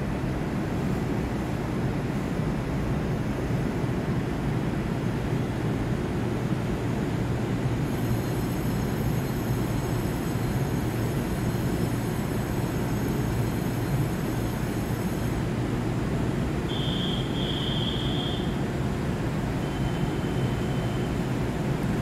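Steady low hum of a TRA EMU800-series electric commuter train standing at the platform with its onboard equipment running. A faint high whine joins for several seconds in the middle, and a short high tone sounds near the end.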